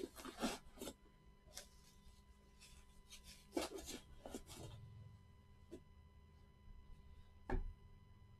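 Plastic bubble wrap crinkling in short bursts as it is pulled off a clear hard-plastic card box, busiest around the middle, then a single knock near the end as the plastic box is handled on the table.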